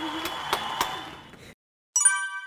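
Applause, with a few sharp hand claps standing out, fading out about one and a half seconds in; a bright chime starts right at the end.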